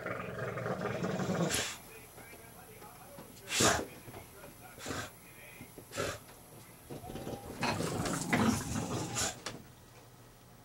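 Bulldog growling in low grumbles for the first second and a half, and again for the last couple of seconds. Between the growls come several sharp knocks, the loudest about three and a half seconds in.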